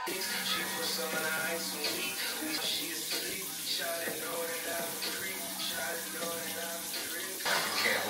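Bathroom sink tap running steadily, with music playing quietly underneath.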